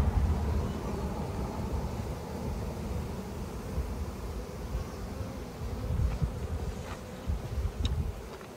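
Honeybee swarm buzzing as a steady hum, with uneven low rumbles underneath and a few faint clicks near the end.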